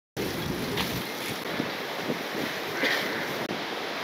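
Steady outdoor rush of wind buffeting the microphone, with faint scattered voices of a crowd gathered around.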